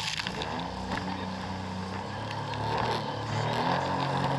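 Jet ski engine running steadily at speed, with rushing water, spray and wind noise over it, heard from a camera mounted on the front of the craft.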